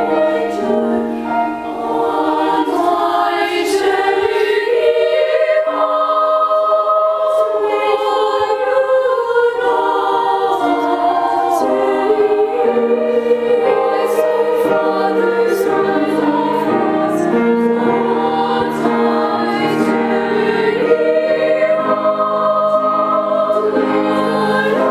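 A choir singing in several parts, holding chords that shift every second or two.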